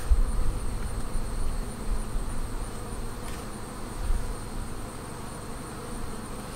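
Honey bees buzzing steadily around busy hives.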